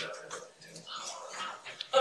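Indistinct murmur of voices in a meeting room, softer in the middle.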